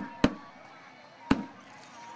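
Two sharp single knocks, the first just after the start and the second about a second later, over faint crowd chatter.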